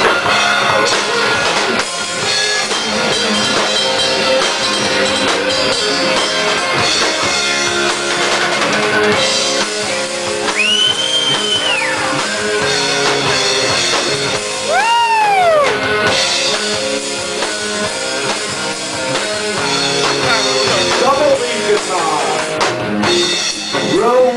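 Live rock band playing an instrumental intro on electric guitar, bass guitar and drum kit. The lead guitar bends notes up and back down, clearly about 11 and 15 seconds in.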